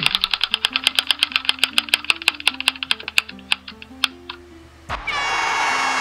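Spinning on-screen name-picker wheel's ticking sound effect: a rapid run of clicks that slows down and stops about four seconds in as the wheel comes to rest, over quiet background music. About five seconds in, a loud celebratory applause-like sound effect starts as the winning name comes up.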